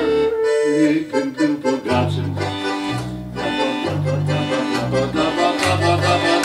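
Piano accordion playing a tune, its bass side sounding chords about once a second under the melody, joined by a clarinet.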